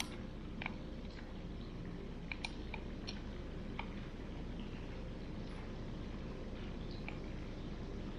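Steady low background hum with a few faint, short clicks.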